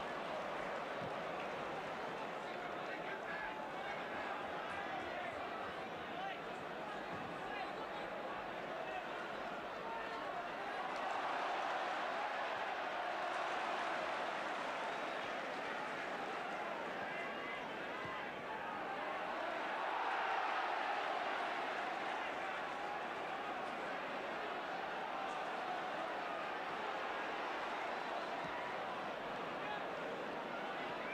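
Large football stadium crowd, a continuous mass of voices that swells louder twice, about a third of the way in and again about two-thirds in.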